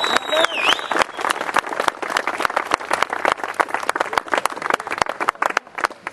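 Audience clapping, thinning out and dying away near the end, with a voice or call over it in the first second.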